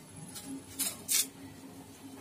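Three short, crisp rustling snaps, about half a second apart, as a fresh giloy stem is broken up by hand.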